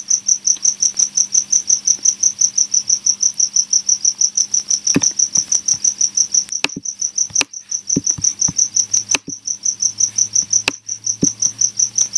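A high-pitched insect chirp, repeating about six times a second without a break, with a few sharp clicks scattered through it.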